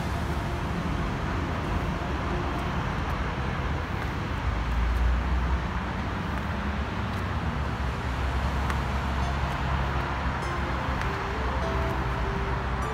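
Steady outdoor background noise with a low rumble, typical of road traffic; the rumble swells about four to six seconds in. Faint music comes back in near the end.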